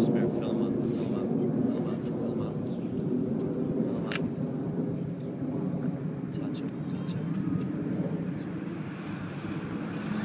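A steady low engine drone, with a sharp click about four seconds in.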